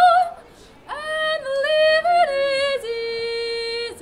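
Solo soprano singing unaccompanied in operatic style. A held, vibrato-rich high note ends just after the start. After a short breath pause she sings a phrase of stepping notes and settles on a lower note, held steady near the end.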